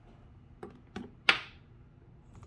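A wristwatch being taken off and handled: two light clicks, then a sharp click a little over a second in, from the strap's buckle and the watch case being handled.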